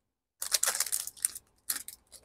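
Foil wrapper of a Topps trading-card pack crinkling as it is pulled apart and off the cards: a crackling burst of about a second, then a shorter one near the end.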